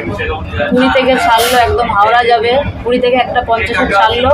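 People talking inside the cab of a moving Vande Bharat Express electric train, over the train's steady low running rumble.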